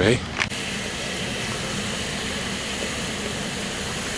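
Steady, even hiss of escaping steam from a standing steam locomotive.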